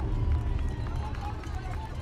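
Outdoor ambience beside a triathlon run course: a steady low rumble with faint spectator voices in the background.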